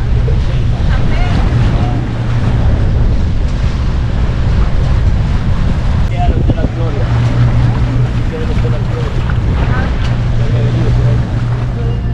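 Wind buffeting the microphone at the bow of a moving pontoon boat, over a steady low rumble from the boat and water washing past, with faint voices now and then.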